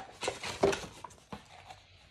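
Paper and cardboard packaging being handled: rustling and crinkling as an instruction leaflet is pulled from a box and opened. The sharpest crackle comes about half a second in, with fainter rustles after.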